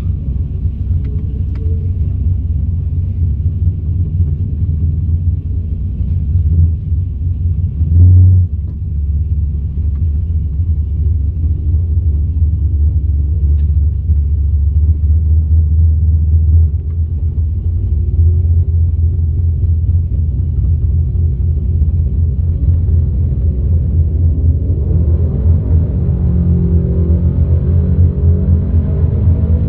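Holden VZ SS Ute's 5.7-litre V8 idling with a steady low rumble inside the cabin as the car creeps forward, with one heavy thump about eight seconds in.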